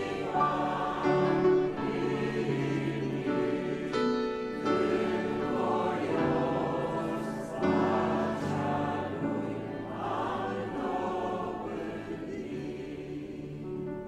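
Congregation singing a hymn together with piano accompaniment, fading toward the end.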